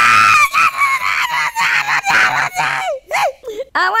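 A cartoon schoolboy's loud, exaggerated crying wail, voiced by an actor. It rises sharply at the start, is held high for about three seconds, then breaks into shorter falling sobs.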